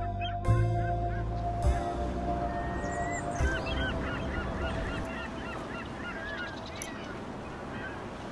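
Outdoor birds calling in many short, overlapping calls, starting about two seconds in and running on, with soft keyboard music fading out under them over the first three seconds.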